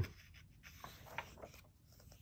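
Faint rustle of a graphic novel's paper page being turned by hand, with a few light ticks and scrapes as it slides over the facing page.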